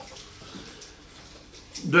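A pause in a man's speech with only faint room noise; his speech starts again near the end.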